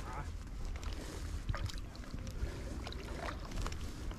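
Light sloshing and small splashes of water as a hooked wels catfish stirs at the surface in the shallows, with a few short sharp splashes and a steady low rumble of wind on the microphone.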